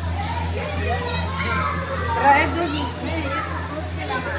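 Children's voices, several at once, talking and calling out over general chatter, with a steady low hum underneath.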